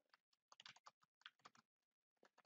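Faint computer keyboard typing: a few short runs of key clicks.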